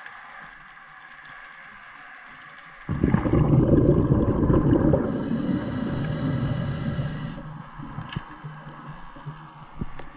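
Underwater recording: a faint steady underwater background, then about three seconds in a sudden loud rush of churning water and bubbles that lasts about four seconds and fades away, with a few sharp clicks near the end.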